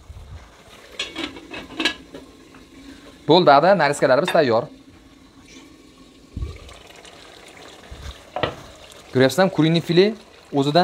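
A wooden spatula knocks and scrapes in an aluminium pot as chicken pieces cooking in their marinade are stirred, over a faint steady sizzle. About six seconds in, a low thud as the pot's lid is set on.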